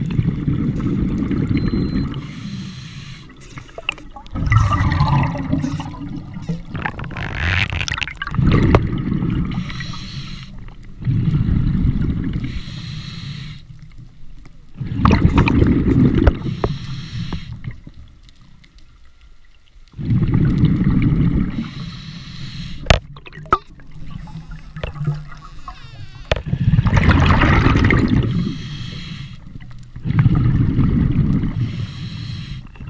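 Scuba diver breathing through a regulator underwater. A bubbling rush of exhaled bubbles comes every three to five seconds, with fainter hissing breaths between, and a couple of sharp clicks about two-thirds of the way through.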